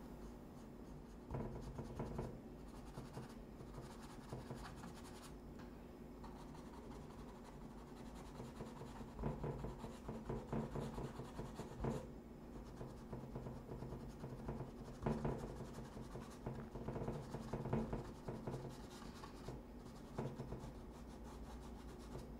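Paintbrush scrubbing and spreading acrylic paint on canvas in faint, irregular strokes that come in clusters, over a low steady hum.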